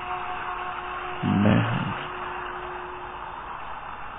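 Soft sustained background music notes held over a steady hiss, with a short low voice sound about a second and a half in.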